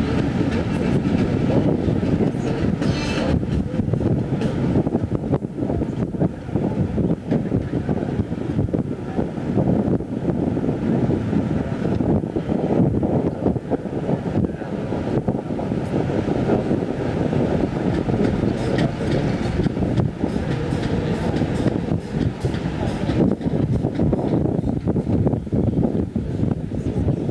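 Wind buffeting a camcorder's built-in microphone on an open ship deck: a steady, loud rumble that flutters and gusts without a break.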